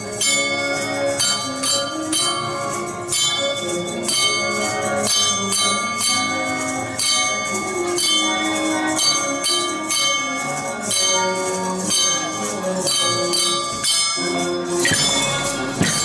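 A hand-percussion ensemble playing along to a melody in a steady beat. Small metal cup bells struck with rods give a bright ringing, over clacking wooden tone blocks and rattling shakers.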